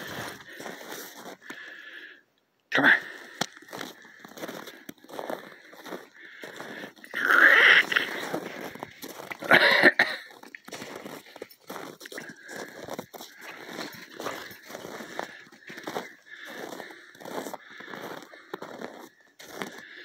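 Footsteps of boots crunching on packed snow at a steady walking pace, with two louder rustling sounds about eight and ten seconds in.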